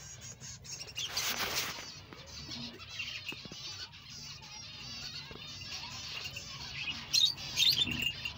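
A colony of small finches chirping and twittering, with many quick, high chirps overlapping. About a second in there is a brief rustle.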